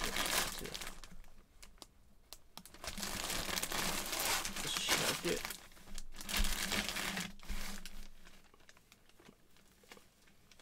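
Clear plastic bag crinkling and rustling as a hockey jersey is handled and pulled out of it, in three long bouts with quieter pauses between.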